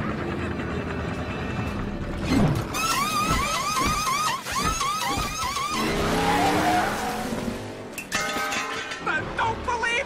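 Cartoon pit-stop sound effects over music: a fast run of repeated rising-and-falling whines, about three a second, from the pit crew's tyre-changing air gun, then a rush of engine and tyre noise as the race car pulls away.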